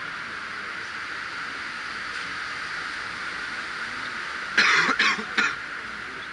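A person coughing three times in quick succession, the loudest sound, near the end, over a steady hiss.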